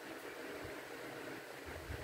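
Steady faint hiss of background room noise, with a few soft low thumps near the end.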